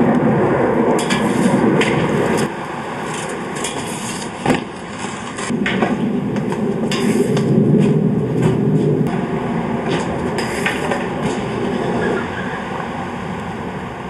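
Soap-shoe grind plates scraping along metal stair handrails in two long grinds, with scattered knocks from landings and footsteps.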